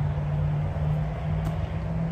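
A steady low hum, one unchanging tone, over continuous low rumbling background noise, with no speech.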